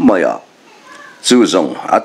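Speech: a voice narrating, in two phrases with a short pause between them.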